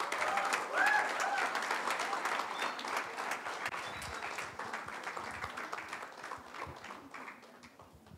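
An audience applauding, many hands clapping together, dying away gradually over several seconds.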